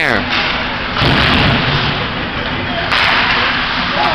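Ice hockey play in a rink: a rush of noise from skates and spectators, heaviest about a second in and again near the end, with light knocks of sticks and puck.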